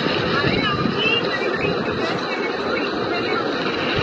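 A faint voice from a phone's speaker on a video call, heard briefly in the first second or so, over a steady rushing noise.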